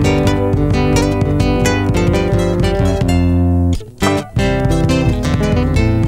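Instrumental passage of Argentine folk music: acoustic guitar and charango strummed in rhythm, with a bombo drum. A little past halfway a chord is held, then the music breaks off for about half a second and comes back in.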